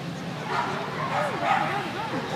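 A dog barking and yipping in high, wavering calls, starting about half a second in and continuing to the end.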